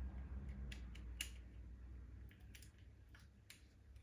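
A handful of faint, sharp clicks and small scrapes of a flathead screwdriver working the body-fixing screw of a plastic Lima model locomotive, with a low hum that fades out about two seconds in.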